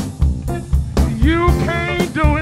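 Live blues band playing a steady shuffle beat on drum kit with bass and guitar. About a second in, a lead line with bending, wavering notes comes in over the band.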